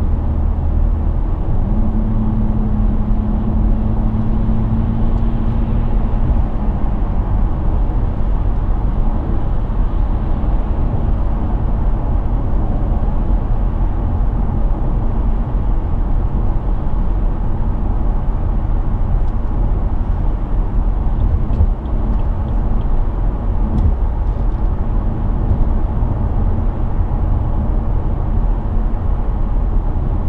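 Cabin noise of a BMW 730d cruising at motorway speed: steady road and tyre roar under the low hum of its 3.0-litre straight-six diesel. A low engine tone stands out for a few seconds near the start.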